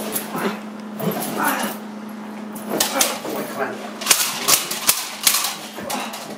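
A Belgian Malinois gripping and head-shaking a decoy's padded bite suit, with the dog's growls and scuffling. In the second half there is a run of sharp slaps and knocks from the thrashing against the suit.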